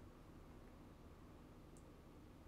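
Near silence: low steady room hum, with one faint short click near the end.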